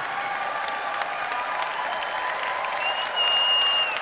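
Audience applauding throughout, with a single high, held whistle from the crowd near the end.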